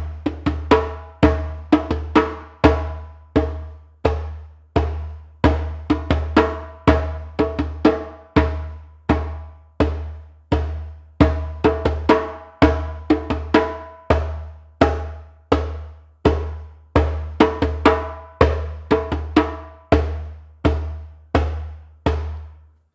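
Hand drum with a synthetic head struck with bare palms, repeating the jajinmori jangdan, a fast Korean rhythm of four beats each split in three, at a steady tempo. The stronger strokes ring low and deep, with lighter strokes between them.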